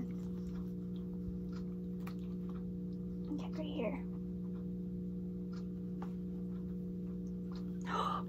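Faint clicks and rustles of a watch band being fastened by hand, over a steady low hum. A short vocal sound comes about three and a half seconds in.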